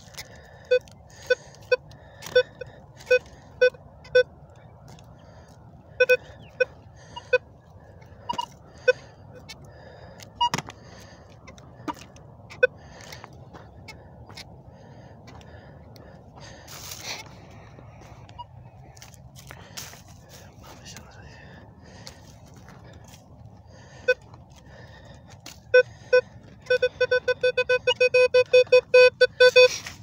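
Metal detector giving short, high beeps as its coil is swept over the soil: a string of beeps at about two a second, then scattered ones, then a quiet stretch. Near the end comes a fast run of about eight beeps a second, the detector signalling a metal target.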